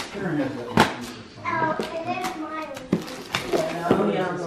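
Children's voices in a small room, broken by a few sharp knocks.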